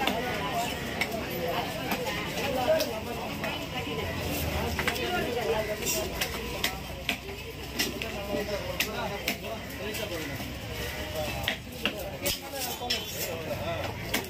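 Knife scraping scales off a small grouper on a wooden chopping block: a run of short, sharp scraping strokes, over a background of voices.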